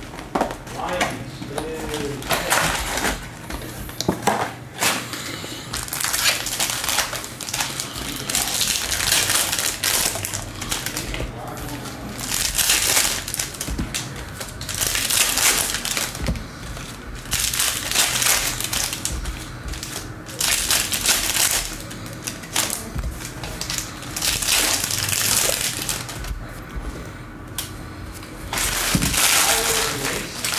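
Plastic trading-card pack wrappers (Panini Mosaic football packs) being torn open and crumpled by hand. The crinkling comes in repeated bursts a second or two long, with short pauses between them.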